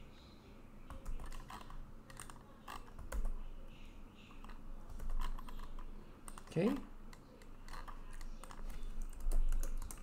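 Light, irregular clicking and tapping of computer input at a desk, with a short spoken 'okay' about six and a half seconds in.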